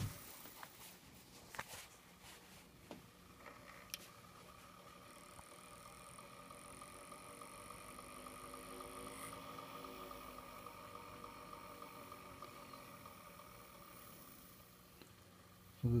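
Brunswick four-spring phonograph motor, with two spring barrels in parallel, running after being wound: a faint steady whirr of the governor and gears, swelling a little through the middle and easing off near the end. There are a few light clicks in the first four seconds.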